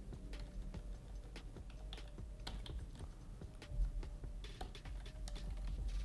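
Typing on a computer keyboard: irregular key clicks while code is being edited.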